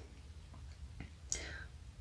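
Quiet pause with faint handling noise: a small click about a second in, then a short breath.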